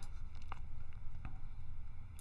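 Low room hum with two faint clicks from a computer mouse, about half a second and a second and a quarter in.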